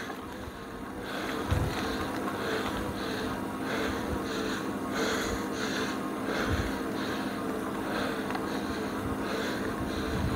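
Heavy, rhythmic panting from a rider pedalling hard, about two breaths a second. Under it runs the steady whine of a Lectric XP 3.0 e-bike's rear hub motor, straining under load up a steep hill in first gear.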